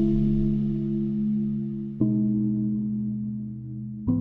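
Sampled Wurlitzer electric piano playing two sustained low chords, one struck at the start and another about two seconds in, each ringing on and slowly fading.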